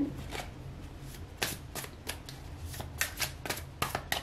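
Tarot deck being shuffled by hand: a string of irregular quick card flicks and riffles, with clusters of clicks in the middle and near the end.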